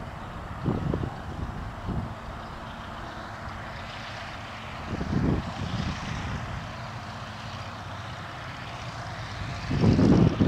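Stearman biplane's radial engine running at low taxi power, the propeller turning, with a steady hum and a few louder low surges.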